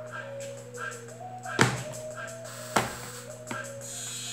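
Sharp knocks from a plastic mould being struck and pressed to release a set block of homemade soap. There are two loud knocks, about a second and a half in and again near three seconds, and a weaker one after them, over background music.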